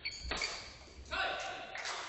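Badminton racket striking the shuttlecock with a sharp crack, then a short pitched vocal call from about a second in as the rally ends, echoing in a large sports hall.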